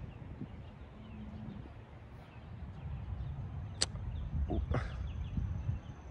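Low wind rumble on the microphone with faint birdsong, broken by a single sharp click about four seconds in.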